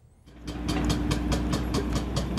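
Heavy engine running with a deep rumble and a rapid, even mechanical clatter of about six to seven clicks a second. It starts about a quarter second in.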